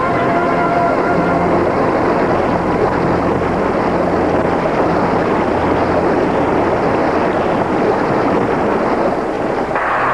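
Steady rushing noise of fast-flowing river water, a cartoon sound effect, with faint music notes dying away in the first few seconds and a brief surge just before the end.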